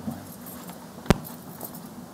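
A single sharp click about a second in, over a faint steady room hum and light handling rustle, from equipment being handled at the lectern.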